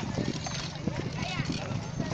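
Hooves of several horses walking on a dirt track, an irregular clip-clop of many overlapping steps, with faint voices in the background.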